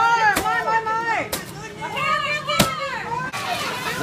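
A stick whacking a paper piñata, three sharp hits about a second apart with the last one the loudest, among children's high-pitched shouting and squeals.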